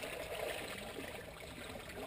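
Water churning and swishing around a paddle sculling a small jon boat back and forth, a steady sound without breaks.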